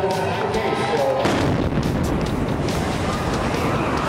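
A bomb explosion about a second in, with a sudden onset into a loud, sustained rumbling noise. Dramatic background music plays underneath.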